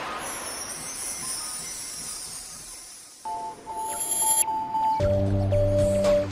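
Channel intro jingle. A fading whoosh gives way to music, with a held high note entering about three seconds in and a deep bass chord joining near the end.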